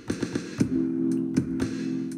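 Electronic beat played on an Arturia Spark LE drum machine: sharp, irregular percussion hits over a sustained low synth chord that comes back in just under a second in.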